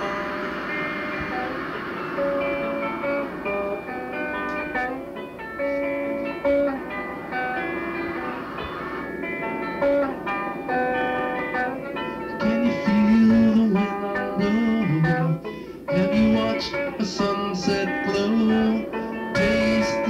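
A small rock band's 1980 four-track tape recording playing: guitar with held, sustained notes over a steady beat. About twelve seconds in, louder low notes come in.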